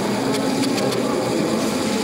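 Steady murmur of a crowd in a large hall, with a run of light, irregular clattering knocks over it.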